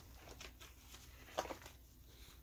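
Faint clicks and light rustling of plastic card sleeves being handled, with one sharper click about one and a half seconds in.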